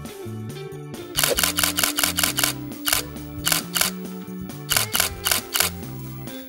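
Nikon D3300 DSLR's shutter and mirror firing in continuous burst mode: several runs of rapid clicks, about six a second, starting about a second in, with short pauses between runs.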